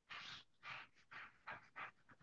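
Five quick, faint scratchy strokes of a felt-tipped applicator pen filled with watercolour rubbing back and forth across paper.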